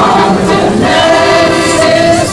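Mixed amateur choir singing in full harmony, sustained sung chords over an accordion accompaniment.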